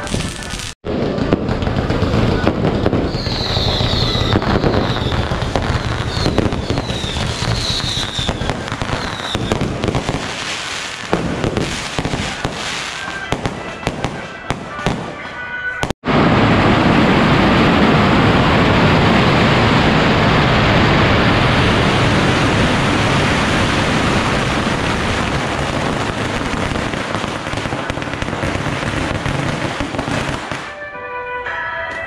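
Firecrackers and fireworks going off thickly around a temple palanquin, a dense continuous crackle with a few brief high whistles in the first half. After a short break about halfway, it comes back louder as one unbroken wall of crackling.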